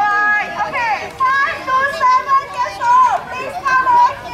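Children shouting and calling out in high voices, several calls overlapping and breaking off one after another.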